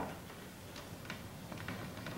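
A few faint, unevenly spaced clicks over a low, steady hum.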